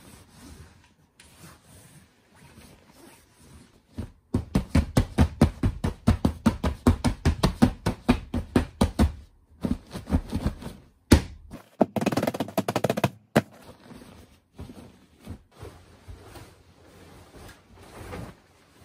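A pillow being plumped by hand: a rapid run of soft pats and thumps for about five seconds, then a few more, a single sharp slap, and about a second of rustling fabric.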